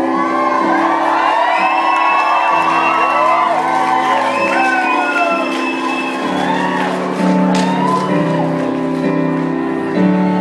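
Live piano playing sustained chords while the audience whoops and shouts over it, many voices at once for the first several seconds; a single singing voice takes over in the second half.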